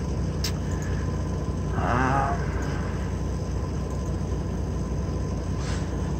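A steady low mechanical rumble, with a short click about half a second in and a brief murmur of a voice about two seconds in.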